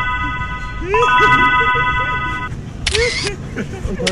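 A steady, high-pitched tone made of several notes held together, sounding for about a second and a half from about a second in, with short voices under it and a brief hiss near the end.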